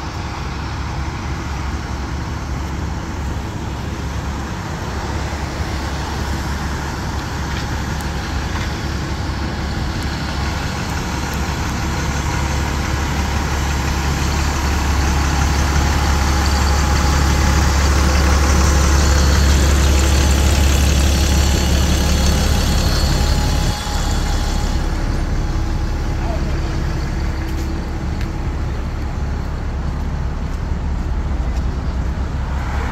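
Engine of a double-decker tour bus idling at the curb, a steady low hum that grows louder as the back of the bus is passed, with city traffic in the background.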